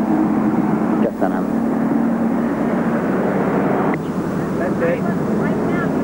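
A steady engine drone over outdoor noise, its low hum fading about two and a half seconds in.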